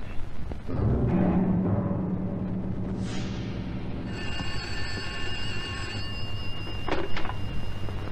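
Dramatic soundtrack music from an old Turkish film: a low rumble, a falling sweep about three seconds in, then high sustained tones from about four seconds in. Two short sharp sounds come near the end.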